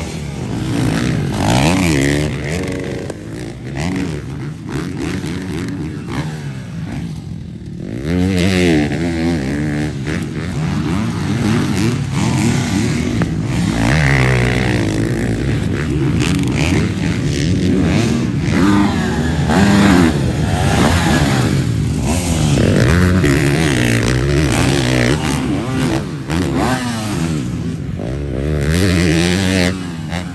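Several motocross dirt bikes running on a track, their engine notes repeatedly revving up and falling off, overlapping one another. The sound is a little quieter around a quarter of the way in, then louder again.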